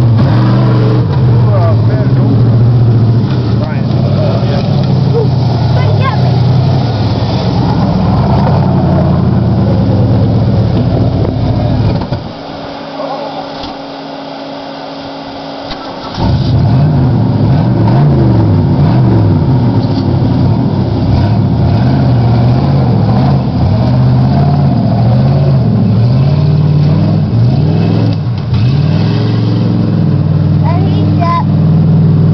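Big-block Ford 460 V8 of a lifted half-ton pickup on 38-inch mud tyres, run hard through a mud bog, its revs rising and falling again and again. Near the middle it drops back to a quieter, steady sound for about four seconds before the revving picks up again.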